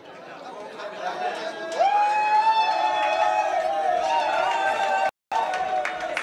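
Crowd noise and chatter in a hall, with one long, high, held call cutting in about two seconds in and lasting about three seconds. The sound drops out for an instant near the end.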